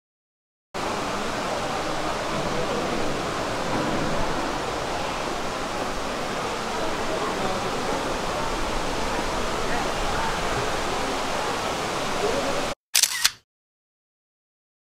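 Steady rushing noise, like falling water or spraying mist, with a murmur of visitors' voices, echoing under a glass dome. It cuts in about a second in and cuts off suddenly near the end, with a brief separate burst just after.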